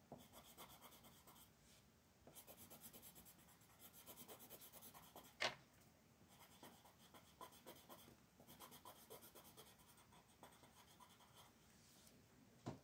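Faint coloured pencil shading on coloring-book paper: runs of rapid back-and-forth strokes, each lasting one to three seconds with short pauses between. A single sharp tap a little past halfway is the loudest sound.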